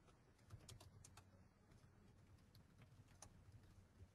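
Faint computer keyboard typing: a run of quick, light key clicks as a line of text is typed.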